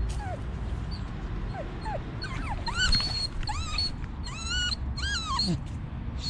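Staffordshire Bull Terrier whining: a series of high, rising-and-falling whimpers that come thicker in the second half, a dog's excited whine while staring up a tree after a squirrel.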